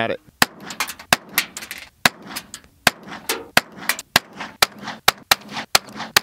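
.22 rifle firing a fast string of shots, about three to four sharp cracks a second.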